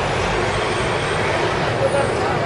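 City street traffic: a steady rumble of engines and tyres as a car drives past, with indistinct voices underneath.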